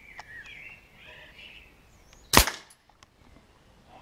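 Air rifle firing a single pellet shot about two seconds in, one sharp crack.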